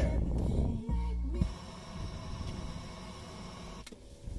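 Music streamed from an iPhone playing through the car stereo's speakers by way of an FM transmitter, clear with no static. About a second and a half in the bass drops away and the music goes on more quietly, with a single click near the end.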